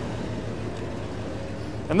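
1973 Mercury Marquis Brougham's V8 idling steadily with a low, very quiet hum through its single exhaust.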